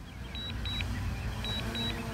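Pairs of short, high-pitched warning beeps from a DJI Mavic Air 2's controller during auto-landing, repeating about once a second, over a steady low rumble.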